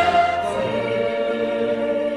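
Singers and an orchestra performing together, voices and instruments holding sustained notes that move to a new chord about half a second in.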